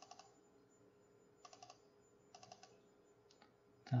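Faint clicking of a computer keyboard, in a few short clusters of keystrokes spread about a second apart.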